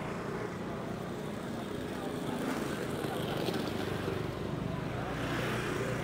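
Busy street traffic: motorbike and scooter engines running past, with background voices of passers-by. The traffic noise swells a little near the end.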